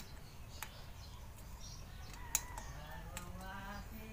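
A few light metallic clicks of a hand tool on the valve tappet adjuster of a small four-stroke motorcycle engine during a valve clearance adjustment, the sharpest about two and a half seconds in. A faint, wavering pitched call sounds in the background in the second half.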